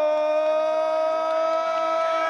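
Ring announcer's long held shout of a boxer's name, one sustained note drawn out at a steady pitch. Fainter crowd voices are underneath.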